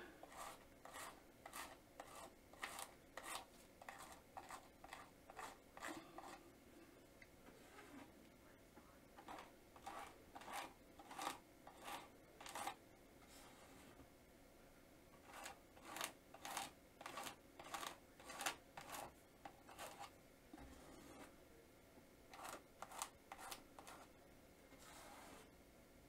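Faint rhythmic scraping strokes, about two a second in several runs with short pauses, as tinted modeling paste is spread and smoothed over a paper collage on canvas.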